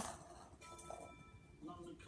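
Very quiet room: a few faint steady tones in the middle and a brief faint voice near the end, with no ball bounces heard.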